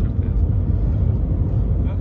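Steady low rumble of road and engine noise inside the cabin of a moving Seat Leon 1.9 TDI.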